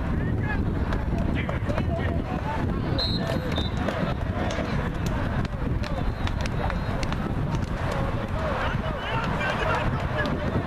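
Many overlapping voices shouting and calling on a football sideline, none of them clear, over a steady low rumble.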